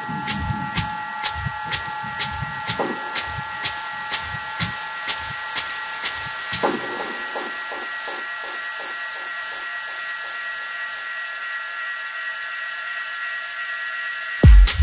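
Breakdown in an electronic techno track: a held synth chord and a steady hissing noise layer over ticking hi-hats about four a second, with the kick and bass dropping out about halfway through.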